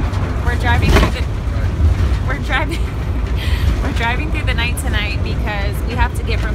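Steady low rumble of a van driving on the road, heard from inside the cabin, under a woman's speech.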